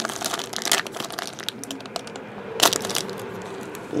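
Thin black plastic bag crinkling as it is handled and a graded card slab is drawn out of it, in irregular rustles with one sharper crackle about two and a half seconds in.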